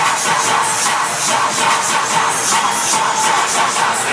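Loud electronic dance music with a steady beat: the recorded mix for a cheerleading routine.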